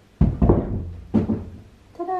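Wooden panelled cupboard door lifted off its lift-off hinges and handled: a loud thunk just after the start, then a few more knocks of the wood.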